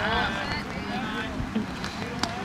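Low, steady wind rumble on the microphone, with a voice trailing off at the start and faint voices of nearby spectators after it.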